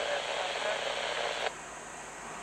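Scanner radio carrying a railroad transmission: a hiss of static with faint, garbled voice that cuts off suddenly about one and a half seconds in.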